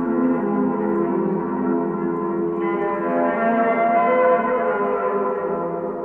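Yaybahar being bowed: a long string whose vibrations run through coiled springs into two frame drums, giving several held, reverberating tones sounding at once. The sound brightens about two and a half seconds in, then slowly fades near the end.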